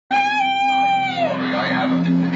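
A long, high wailing cry that holds one pitch for about a second and then slides downward, over a steady low drone.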